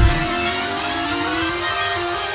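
Live gospel band playing with no singing. The bass and drums drop out just after the start, leaving held, sustained chords.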